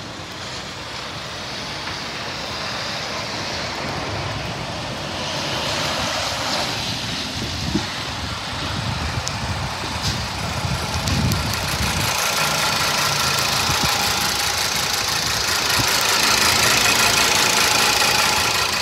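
2020 Ford EcoSport AWD's 2.0-litre four-cylinder engine idling, growing louder and clearer as the open engine bay is neared.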